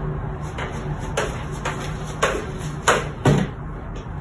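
A 12-inch Dobsonian telescope being shifted by hand: a series of about six short, irregular knocks and bumps as the tube and base are handled and moved.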